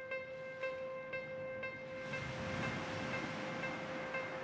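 Soft background music: a held tone with gentle repeating notes about twice a second. About halfway through, a rising hiss of noise joins it.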